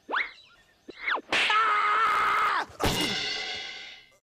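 Cartoon sound effects: two quick whistling swoops that rise and fall, then a held buzzy tone for over a second, then a sudden crashing whack whose ringing fades away.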